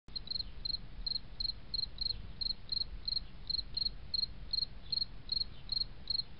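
A cricket chirping steadily, about three short high chirps a second, over a faint low hum.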